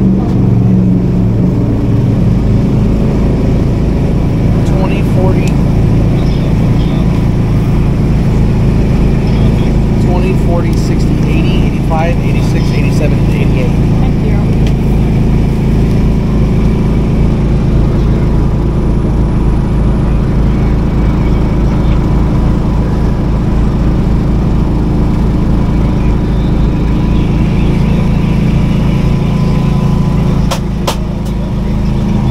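A steady low engine hum runs without a break, with faint voices in the background.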